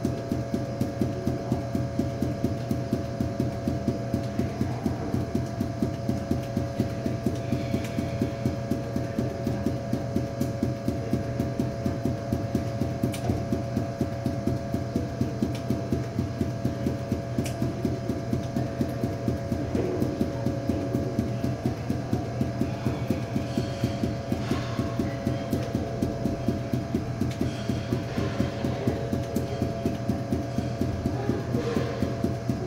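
Five bounce balls thrown down onto a hard floor in a force-bounce juggling pattern, hitting in a rapid, even rhythm with a steady hum underneath.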